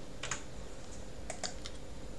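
Faint computer mouse clicks: one click, then three quick clicks in the second half.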